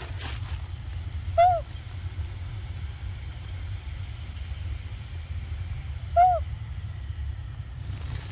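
An animal call, a short hoot that rises and falls, given twice about five seconds apart over a steady low rumble.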